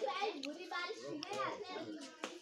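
A small child's high-pitched voice calling out in wordless cries during a ball game, with a couple of short sharp taps among them.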